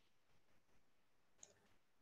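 Near silence on a video-call line, with one faint click about one and a half seconds in.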